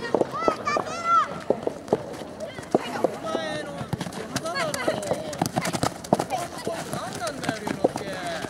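Children's voices shouting and calling across a youth soccer game, with frequent short knocks from feet striking the ball and running steps on a dirt pitch.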